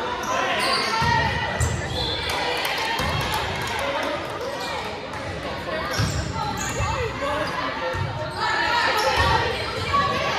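A volleyball bouncing and being hit on a wooden gym floor, a few separate thumps, under the talking and calling of players and spectators in a large gymnasium.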